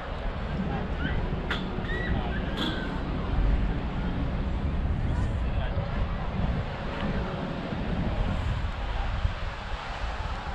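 Wind buffeting the camera's microphone as a low, uneven rumble outdoors, with faint voices in the background.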